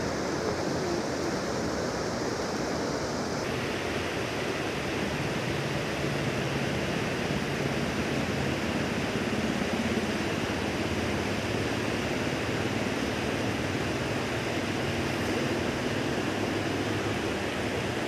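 Steady rushing of a shallow mountain river running over boulders.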